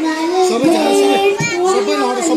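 A child singing into a handheld microphone over a PA, in long held notes that bend in pitch.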